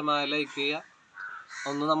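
A man talking in Malayalam: two phrases with a short pause between them.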